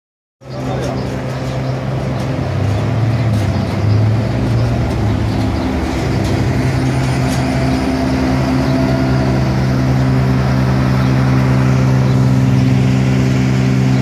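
An engine running steadily at idle, a low even hum that holds unchanged, with street traffic around it.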